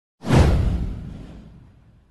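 A whoosh sound effect for an intro animation, with a deep boom under it. It starts suddenly about a quarter of a second in, sweeps down in pitch and fades away over about a second and a half.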